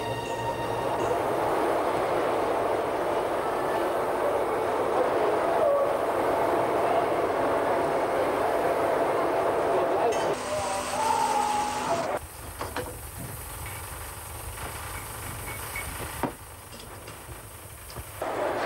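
Steam locomotive venting steam as a steady hissing rush. It changes about ten seconds in, and after about twelve seconds it drops to a quieter, thinner hiss.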